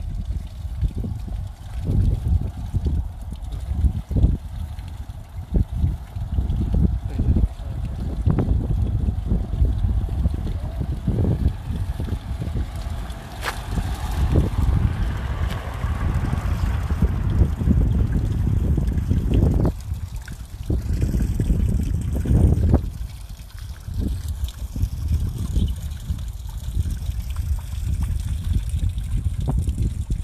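Small garden fountain trickling and splashing, with a heavy low rumble that comes and goes over it.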